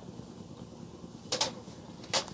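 Metal chopsticks clicking twice in quick succession against a small plastic sauce tray, about a second and a half in, over a low steady background hiss.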